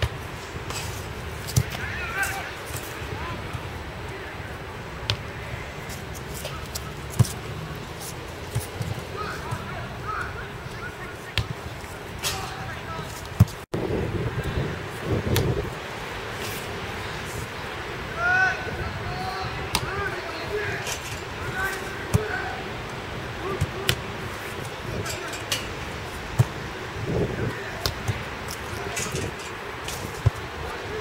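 Football being struck at goal and met by goalkeepers' hands during goalkeeper drills: short sharp thumps of ball strikes and saves every second or two, the loudest just before halfway, with faint talk underneath.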